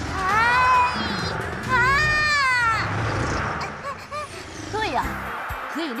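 Cartoon creature cries: two squealing calls, each about a second long and rising then falling in pitch, over background music. Shorter chirps follow near the end.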